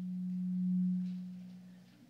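A single steady low tone, close to a pure hum, that swells to its loudest just under a second in and then fades away near the end.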